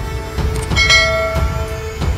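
Background music with a steady low pulse, and a bright bell-like chime struck once about a second in that rings on.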